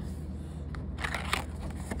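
Brief rustling and scraping of a paper card being handled and lifted out of a box, about a second in.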